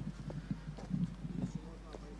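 A quiet pause outdoors: faint distant voices and scattered soft knocks or taps.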